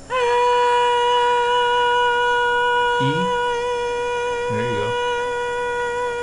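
A human voice holding one steady, high-pitched voiced sound for several seconds, produced by the vocal folds vibrating together. It settles onto its pitch just after it starts and stays almost level, with a slight waver.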